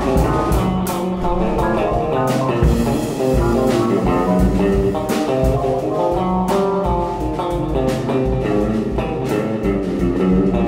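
Live free-improvised music from an electric guitar with effects, a Nord keyboard and a drum kit: layered, shifting keyboard and guitar notes over loose, irregular drum and cymbal hits.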